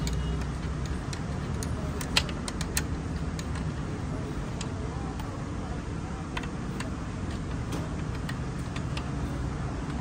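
Open-end spanner working a motorcycle's swingarm chain-adjuster bolt and nut, giving sharp metal clicks: a handful in the first three seconds, the loudest about two seconds in, and a few fainter ones later. A steady low hum runs underneath.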